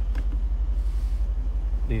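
Mercedes-AMG C63 S's 4.0-litre twin-turbo V8 idling: a steady low rumble with an even, rapid pulse.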